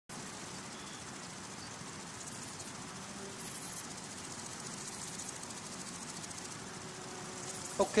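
Faint, high-pitched insect stridulation over a steady hiss, with a brief louder high burst about three and a half seconds in.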